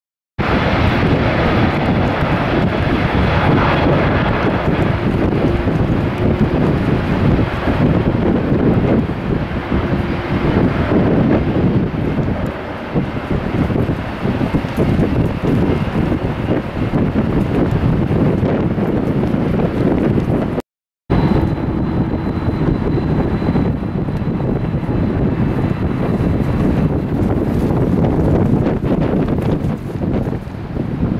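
Jet airliner engines at takeoff power as a Singapore Airlines twin-jet rolls and lifts off, with heavy wind buffeting on the microphone. The sound cuts out briefly about two-thirds of the way through. After that a thin steady whine sits over the noise.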